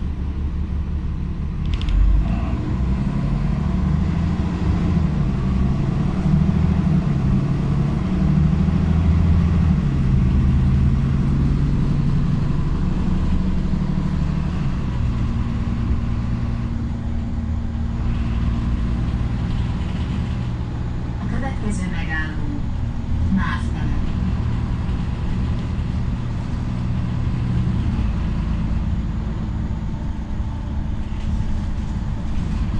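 Diesel engine and drivetrain of an Ikarus 127V city bus heard from inside the passenger cabin while driving. The engine note shifts and steps in pitch through the first half as the bus pulls along, then runs steady at cruising speed.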